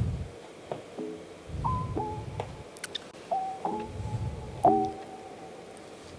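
Soft background music: a slow line of single notes, about seven in all, each starting sharply and fading within about a second.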